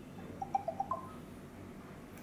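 Electronic notification chime: a quick run of about five short tones that steps up in pitch at the end, sounding as the Bluetooth pairing connects.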